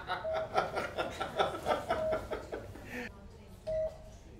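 People chuckling and laughing for about three seconds, then quieter. A short electronic beep, like a patient monitor's, repeats about every second and a half to two seconds.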